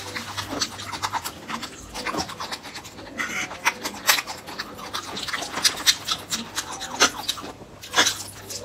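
Close-miked eating sounds: wet chewing and mouth smacks with irregular sticky clicks as a mouthful of sauced food is chewed.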